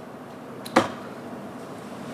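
Quiet room tone with a faint steady hum, broken by one sharp knock about three-quarters of a second in.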